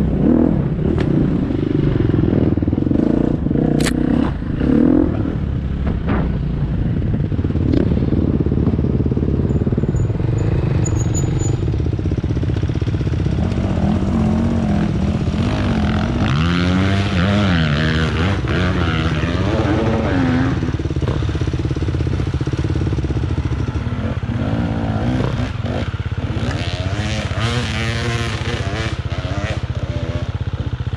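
Enduro dirt bike engines: one bike running steadily under way for the first few seconds, then several bikes idling together, with engines revving up and down in the middle and again near the end as a rider works up a slope.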